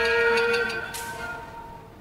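Thai classical string ensemble with saw fiddles and khim sounding the closing notes of a piece. A held note stops about half a second in, then the ringing of the instruments dies away over the last second.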